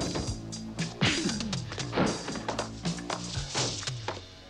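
Background action music with several sharp punch and impact sound effects of a fistfight, roughly one a second.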